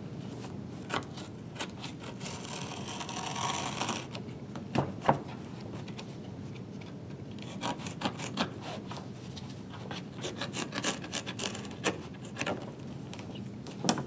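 Safety knife cutting and scraping along a hardcover book's binding to free the pages from the spine: a rasping of blade on paper and glue with scattered sharp ticks, densest about two to four seconds in.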